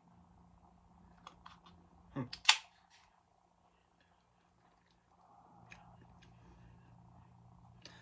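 Someone handling and sipping from an aluminium drink can, mostly quiet: a few small clicks, a short "hmm" about two seconds in, then one sharp click. Faint sipping sounds follow in the last few seconds.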